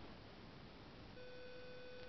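Faint background hiss, then about a second in a steady electronic beep-like tone starts and holds without changing.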